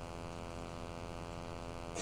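Steady electrical mains hum in the sound system, a low drone with a ladder of even overtones and no other sound over it.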